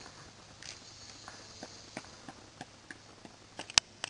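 Footsteps outdoors on grass and pavement: a run of light, irregular steps, with one sharp, louder click near the end.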